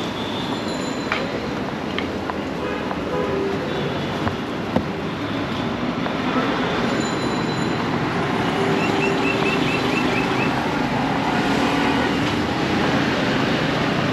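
Steady din of city street traffic, engines of buses and auto-rickshaws running close by, with a few brief horn notes. A quick run of short high chirps sounds about nine seconds in.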